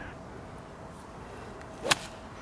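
A golf ball struck with a pitching wedge off the fairway turf: one sharp click near the end, over faint steady outdoor background.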